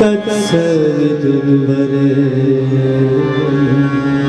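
Harmonium playing steady chords under a man's voice holding one long sung note that starts about half a second in, in a Hindi devotional bhajan.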